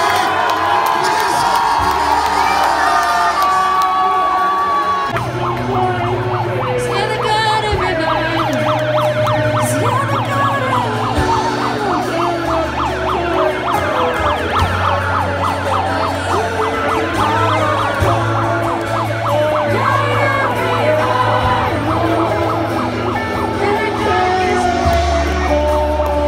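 Live worship music over a loudspeaker: low sustained keyboard chords changing every few seconds, with a crowd singing along.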